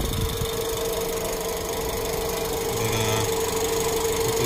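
Jeep Compass engine idling, heard from the open engine bay: a steady low running hum with a constant whine over it.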